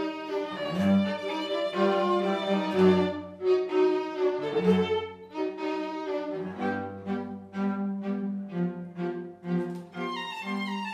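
A string quartet playing live: violins over a low cello line, in bowed phrases that break into shorter, separated notes in the second half.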